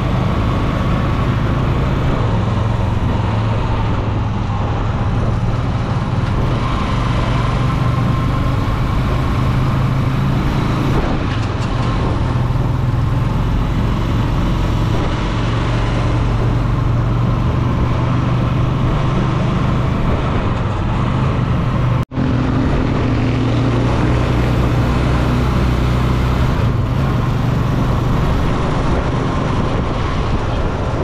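Tricycle's small Honda motorcycle engine running steadily under way, with road and wind noise, heard from inside the sidecar. The sound cuts out for an instant about three-quarters of the way through, then carries on as before.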